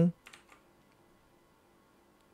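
A few faint keystrokes on a computer keyboard near the start, then near silence.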